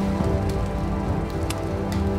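Sustained, drone-like background music holding a low chord, with a few faint crackling clicks.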